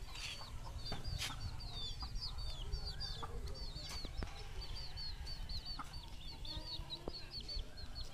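Chicken chicks peeping over and over in short, high, falling notes, with hens clucking now and then, over a steady low rumble.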